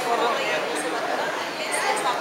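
Several people talking at once in indistinct, overlapping chatter.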